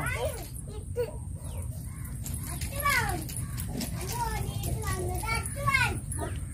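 A young child's voice calling out in short, high-pitched bursts with gliding pitch, three times.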